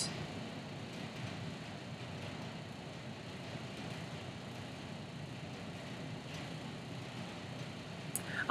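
Quiet, steady background hiss of room tone, with no distinct events.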